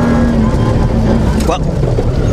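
Suzuki Grand Vitara cross-country rally car's engine running loud, heard from inside the cabin; its pitch drops suddenly about one and a half seconds in.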